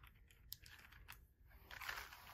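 Near silence: room tone with two faint clicks and a soft rustle near the end from string packets being handled.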